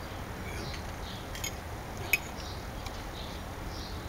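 A single sharp clink of a fork against a plate about halfway through, with a couple of fainter clicks, over steady outdoor background noise.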